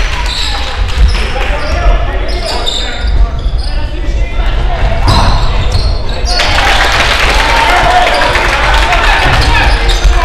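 A basketball game on a hardwood gym floor: the ball bouncing and players moving, under the chatter and calls of spectators and players. The voices grow louder and denser about six seconds in.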